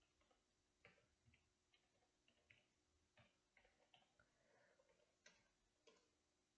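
Faint computer keyboard typing: a dozen or so irregularly spaced keystroke clicks.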